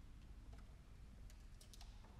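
Near silence: concert-hall room tone with a few faint small clicks, most of them bunched together in the second half.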